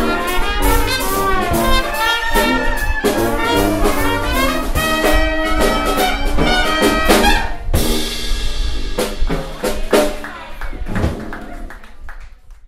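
Traditional jazz band (cornet, clarinet, trombone, sousaphone, piano and drums) playing the closing bars of a tune together. About eight seconds in the ensemble thins to a few separate hits, and the sound fades away near the end.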